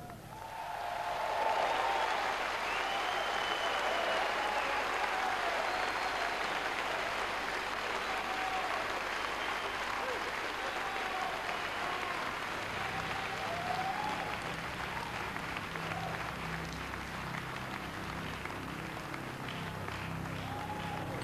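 Concert audience applauding and cheering between songs, with whistles rising above the clapping. About two-thirds of the way through, low instrument tones start quietly underneath as the band gets ready for the next song.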